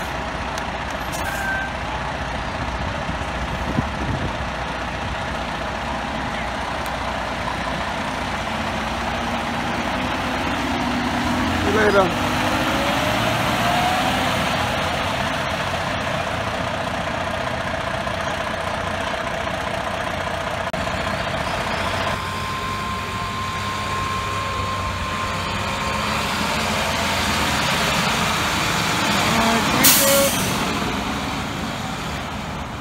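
Diesel engines of FDNY fire engines running and pulling away along a street. There is a short, louder sound about twelve seconds in, and a steady tone through the middle of the passage.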